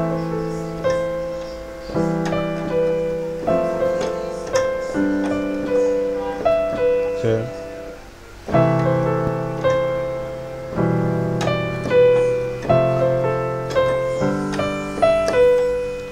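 Piano playing the song's chord progression, left-hand chords under a simple melody. Each chord is struck and held for roughly two seconds, with a short break just before the middle.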